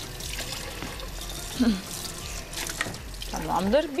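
A kitchen knife cutting through layered yufka and puff pastry in a metal baking tray: a soft, rough scraping hiss with small crackles. A few murmured words come in near the end.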